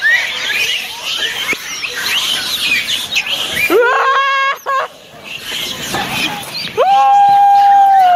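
A large troop of Japanese macaques calling at once: many short, high chirps and squeals overlapping, with a long drawn-out pitched call about halfway and another long, steady call near the end.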